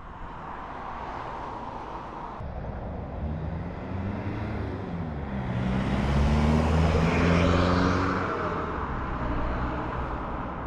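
A motor vehicle's engine passing close by on the road, its pitch shifting as it goes by, loudest about six to eight seconds in, over steady outdoor traffic noise.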